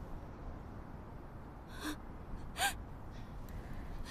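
Two short, sharp intakes of breath from a person, about a second apart near the middle, over faint background hiss.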